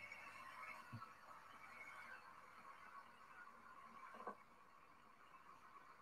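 Near silence: faint steady hiss, with a couple of faint brief sounds about a second in and about four seconds in.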